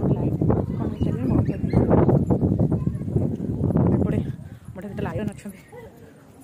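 Indistinct talking, muffled under loud, rough low rumbling noise on the microphone, which fades about four seconds in.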